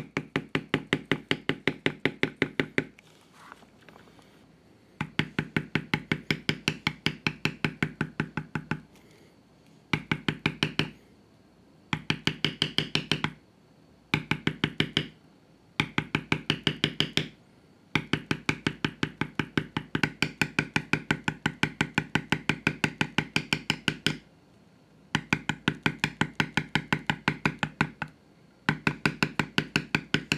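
A steel leather beveler being struck rapidly with a maul, beveling the cut lines of a floral design in damp veg-tan leather: quick, even taps at about seven a second. The taps come in runs of a few seconds, broken by short pauses while the tool is repositioned.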